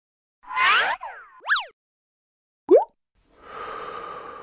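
Logo-intro sound effects: a swooping, bending warble, a quick pitch sweep up and down, then a short rising boing about two and a half seconds in. Near the end a soft whooshing swell builds and then fades.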